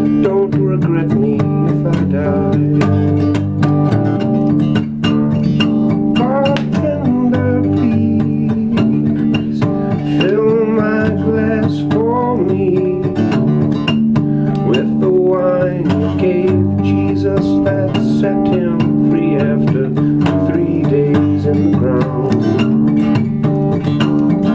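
Steel-string acoustic guitar played solo in an instrumental passage, a busy rhythmic pattern of rapid picked and strummed notes over ringing chords.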